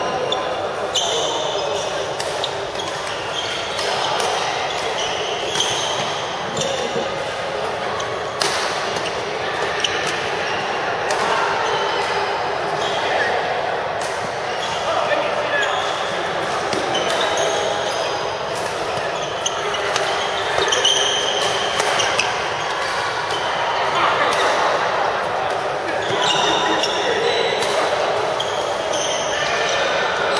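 Racket strikes on shuttlecocks, sharp clicks at irregular intervals, from several badminton courts, over a steady murmur of voices echoing in a large sports hall.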